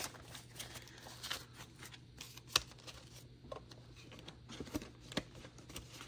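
Paper banknotes being handled on a desk: faint rustling and light taps, with one sharper click about two and a half seconds in.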